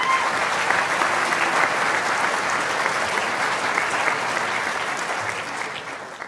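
Audience applauding in a hall: steady clapping from many hands, thinning slightly near the end.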